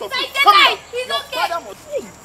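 Speech only: a voice speaking loudly in several short phrases.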